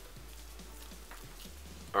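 Faint background music with a steady low bass under it.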